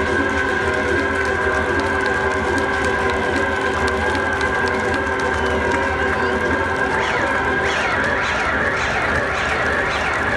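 Live band music heard from the crowd through the festival PA: held electronic notes ring steadily while the audience cheers, with wavering shouts building over the last few seconds.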